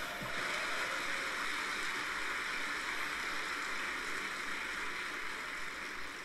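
Large crowd applauding steadily, a dense even clapping that eases off near the end.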